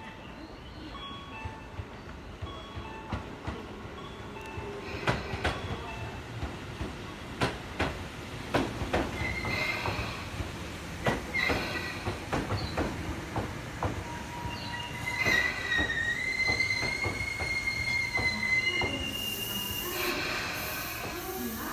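Six-car Tobu Skytree Line electric commuter train running into the platform. Its wheels click over the rail joints, then a high, wavering brake squeal runs for several seconds as it slows, with a burst of hiss near the end.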